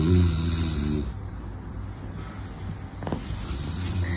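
Domestic cat purring close to the microphone while being stroked: a low, rumbling purr, loudest in the first second and swelling again near the end. A short faint click about three seconds in.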